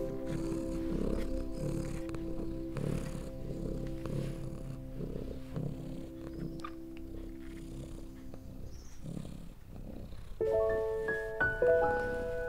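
Soft, slow background music of long held notes, with a cat's purr underneath swelling about once a second. The held notes fade out, and a new run of stepping notes starts near the end.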